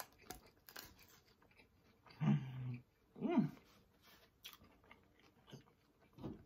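Close-miked chewing of a mouthful of sandwich, with small wet mouth clicks throughout. Two closed-mouth hums of enjoyment come about two and three seconds in, the second rising and falling in pitch.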